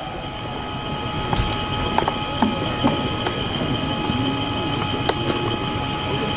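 Outdoor ambience of a large assembled group: a steady rushing noise with faint, scattered voices and a few light clicks, under a thin, steady high-pitched whine.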